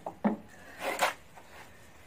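Metal bar knocking and scraping at the wood inside a hollowed-out old elm root: a short knock about a quarter second in, then a longer scrape around one second in.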